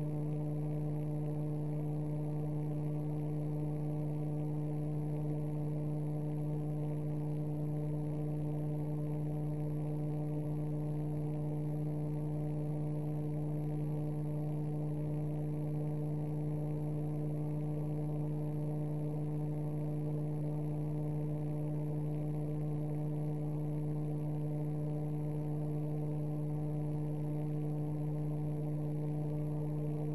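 Steady electrical hum: a low tone with a few higher overtones, unchanging in pitch and level.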